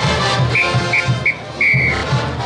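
Brass band music with a steady drum beat, cut through by a whistle blown three short times and then once longer near the end.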